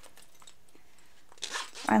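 A zipper pull being slid along a zipper set in vinyl panels, a short rasping run about a second and a half in, after a quiet stretch of room tone.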